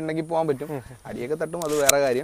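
A man speaking, with no other sound standing out.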